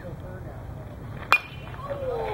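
A metal baseball bat hitting a pitched ball: one sharp ping with a brief ring, about a second and a half in, over faint voices.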